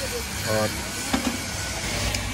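Steady low engine rumble of a vehicle idling, with a few faint knocks.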